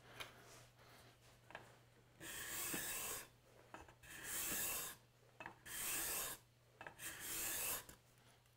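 Hand-held steel card scraper pushed along a wooden board, four separate scraping strokes of about a second each, cutting shavings from the surface.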